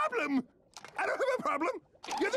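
A cartoon character's high-pitched voice from a SpongeBob clip, sliding up and down in pitch. There is a short stretch at the start, then a longer one after a brief pause.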